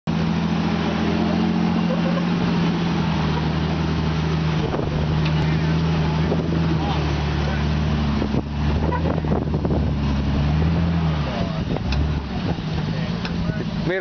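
A lifted off-road Jeep's engine running steadily under load as it crawls up a steep slickrock ledge. About eleven seconds in, the engine drone dips and eases off as the Jeep tops out.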